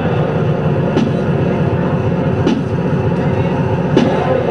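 Live experimental noise music: a loud, dense electronic drone without a break, with a sharp click recurring about every second and a half.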